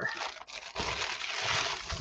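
Plastic padded mailer rustling and crinkling as a jar is pulled out of it, a continuous noisy rustle for nearly two seconds.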